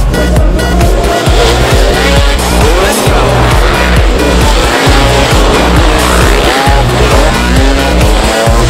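Off-road motorcycle engines revving, with rising and falling pitch, mixed under electronic dance music with a steady bass beat of about two a second.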